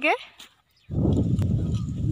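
A loud, low-pitched animal call that starts about a second in and is held to the end.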